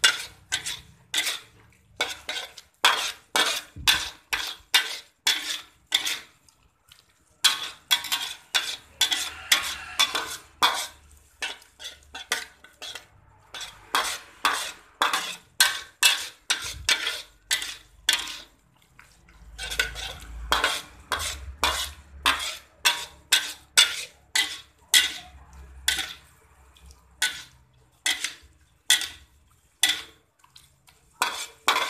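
A spatula stirring octopus and squid sambal in a pan: quick repeated scrapes and clacks against the pan, about two a second, with a few short pauses.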